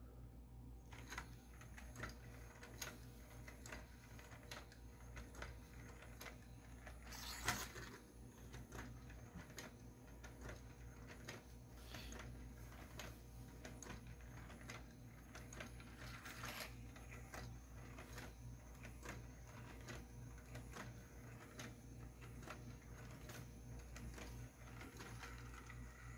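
Four-legged walking toy running: its small N20 gear motor drives 3D-printed plastic gears and leg linkages, and the plastic feet step on a wooden desk. The sound is a faint, steady patter of mechanical ticks, with a couple of louder clicks along the way.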